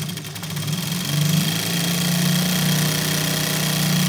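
Industrial sewing machine running steadily, sewing a line of long stitches with the stitch length set to its largest (5) for gathering fabric. It picks up speed and gets louder about a second in, then runs on at an even pace.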